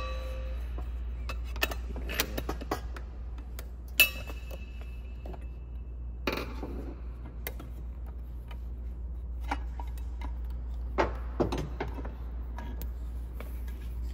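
Metal clicks, knocks and scrapes as a screwdriver pries apart the steel housing plates of a ceiling fan motor to free it from its copper stator. One sharp tap about four seconds in rings briefly, there is a scraping rub around six seconds, and a few knocks come near the end as the plate comes loose, all over a steady low hum.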